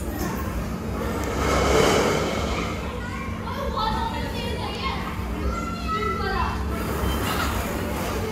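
Children playing and calling out in an indoor play area, their voices mixed with general play noise, with a louder rush of noise about two seconds in. A steady low hum runs underneath.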